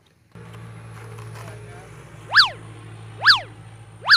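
Three quick comic sound effects, about a second apart, each a tone that slides up and then straight back down in pitch, over a steady low hum.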